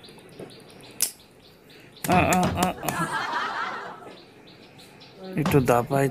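A person's voice in short bursts without clear words, loud from about two seconds in and again near the end, after a quiet start broken by a single click.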